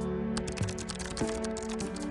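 Computer-keyboard typing clicks in a quick run, about ten a second, starting a moment in, over soft steady background music.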